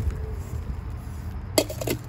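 Handling noise from plastic bags and a metal cup being moved about, with a brief cluster of sharp clicks or clinks about one and a half seconds in.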